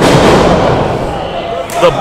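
A wrestling ring's canvas taking a bulldog: a sudden loud slam of two bodies hitting the mat, fading over about a second and a half.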